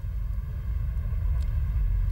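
A low, steady rumble with no speech over it.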